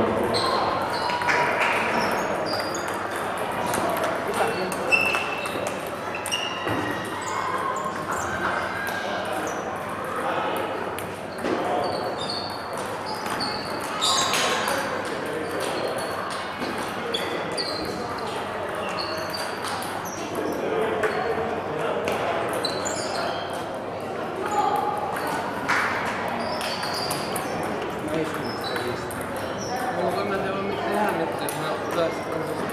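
Table tennis balls clicking on tables and bats from games at other tables, many short irregular pings echoing in a large sports hall under steady background chatter.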